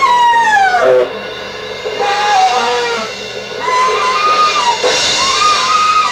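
Free-jazz duo of saxophone and double bass improvising: a high, wavering melodic line glides down about a second in, then comes back as short held notes separated by brief pauses.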